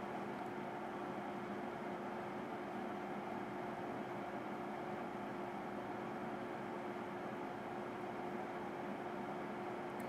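Toaster reflow oven running at reflow heat, heating element on: a steady low hum with an even hiss underneath.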